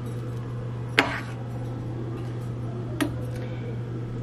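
A metal spoon clinks twice against the side of a stainless steel pot while stirring thick beans, once about a second in and again about three seconds in, over a steady low hum.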